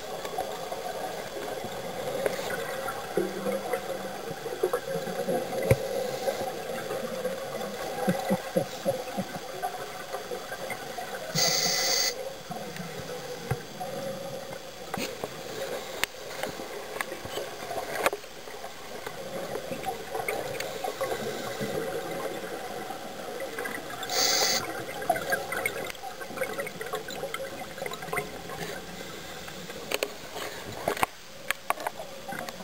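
Underwater bubbling and gurgling from scuba divers' exhaled air. Twice, about twelve seconds apart, there is a brief louder rush of bubbles.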